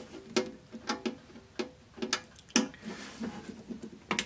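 Screwdriver turning out a screw from a cassette deck's metal cover: a run of short clicks, about two a second at uneven spacing, with a faint squeak under the first second and a half.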